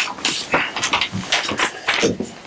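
A paper bid envelope being torn open and its papers handled: a run of short ripping and crinkling noises.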